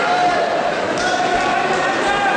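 Many voices chattering across a large sports hall, with a couple of dull thuds about a second in.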